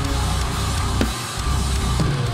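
Acoustic drum kit played hard along with a heavy djent recording, the bass drum dense and continuous with snare and cymbal hits; the low end drops out briefly a little after a second in.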